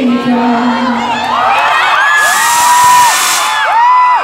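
Concert crowd cheering and screaming as the band's final note cuts off, with many high-pitched shrieks and whoops. A burst of high hiss comes in the middle.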